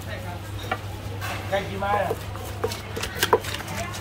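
Wooden pestle and metal spoon knocking in a clay mortar as som tam papaya salad is pounded and tossed: irregular sharp knocks, the loudest about three seconds in.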